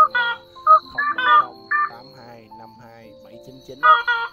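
Lure recording of slaty-legged crake calls, played in a loop: a burst of loud, repeated calls in the first two seconds, starting again near the end, over added background music.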